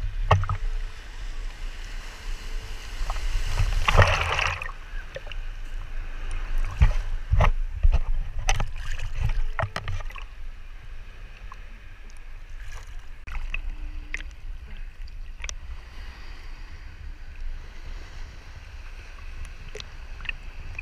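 Shallow sea water sloshing and splashing against a waterproof action camera held at the surface, with a steady low rumble of water on the housing. A louder splash comes about four seconds in, and sharp spatters and knocks are scattered through the first half.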